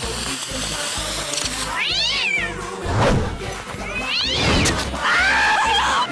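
A cat yowling three times, the last call the longest, over background music with a steady beat.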